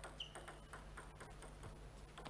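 Celluloid-free plastic table tennis ball bounced over and over on the table before a serve: light ticks, about four or five a second, with a brief high squeak near the start.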